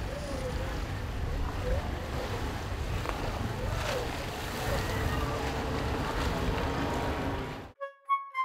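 Sea surf washing and breaking against a rocky shore, with wind noise on the microphone. The noise cuts off abruptly near the end.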